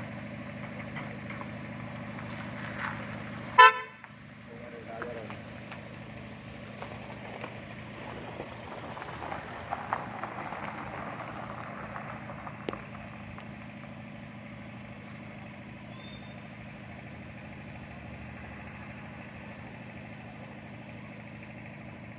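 A vehicle engine running steadily, with one short, loud horn toot about three and a half seconds in. After the toot the steady hum drops out, leaving a fainter engine and street background.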